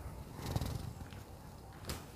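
Quiet handling of cloth: faint rustling as hands move over fabric, over a low background rumble, with a small tap near the end as the ruler is moved.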